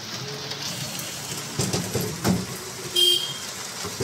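Steady noise of a three-wheeled rickshaw ride through rain on a wet street. A short, high horn toot sounds about three seconds in.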